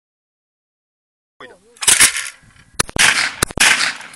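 Shotgun firing a quick string of shots: sharp, loud bangs in three close pairs, the pairs less than a second apart.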